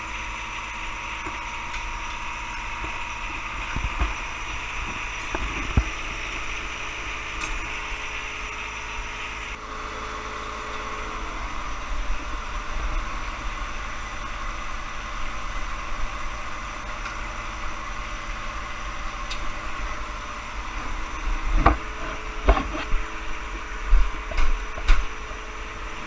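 John Deere 1023E compact tractor's three-cylinder diesel engine idling steadily, with occasional metallic clanks and knocks from handling the three-point hitch links, several of them near the end.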